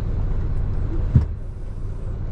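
Steady low rumble of a bus's engine and tyres heard from inside the passenger cabin, with a single loud thump a little over a second in.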